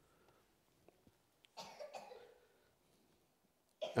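A single faint cough about a second and a half in, amid near silence and a few tiny clicks.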